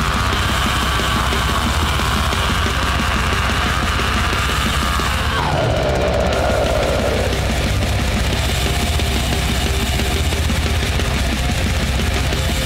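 Blackened death metal with distorted guitars and steady drumming. A high held note slides down in pitch about five and a half seconds in and holds for a moment.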